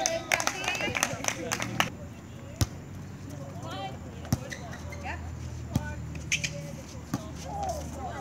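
A volleyball rally: several sharp slaps of hands and arms striking the ball, spaced irregularly through the rally, with players calling out and voices around the court.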